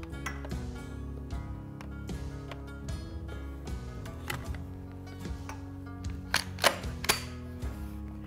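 Soft background music with steady held notes, over a few sharp metal clicks and knocks, the loudest three in quick succession near the end, as a Browning Maxus II shotgun's barrel is slid onto the magazine tube and seated against the receiver.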